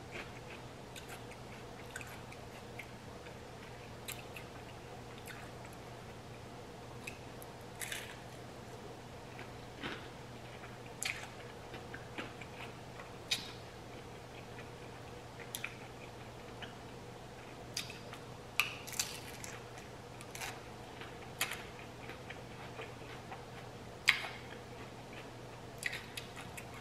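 A person chewing mouthfuls of taco: irregular soft wet clicks and smacks of the mouth, a second or two apart, with quiet gaps between.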